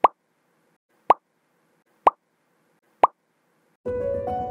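Four short pop sound effects about a second apart, each a sharp click with a brief tone, accompanying an animated title card.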